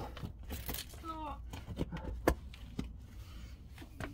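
Scuffing and scraping of clothing and shoes against rock as a person squeezes through a tight rock crevice. There is a brief vocal sound about a second in and a sharper knock a little past two seconds.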